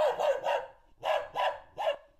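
A dog barking several times in quick succession, in short separate barks spread over two seconds.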